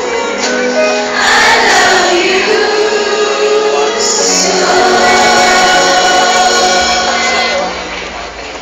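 A large choir singing a song with musical accompaniment, holding long notes; the singing fades out near the end.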